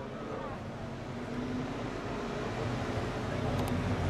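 Engines of a Ford Mustang and a Chevrolet Camaro running as the two cars drive around a short oval track at moderate speed, a steady low drone that grows a little louder toward the end.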